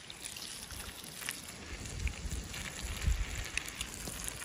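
Low wind rumble on the microphone, growing stronger in the second half, with a few faint clicks.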